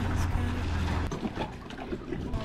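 Small outboard motor of an inflatable dinghy running with a steady low hum, then shutting off about a second in as the dinghy comes alongside.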